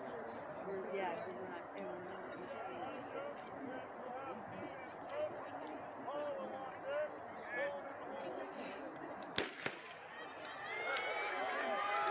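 Starting pistol fired once for a relay start: a single sharp crack about nine seconds in, with a short echo, over steady distant crowd chatter. Crowd voices grow louder in the last couple of seconds as the race gets going.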